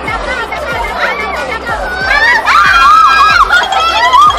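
Excited young women's voices and exclamations over background music.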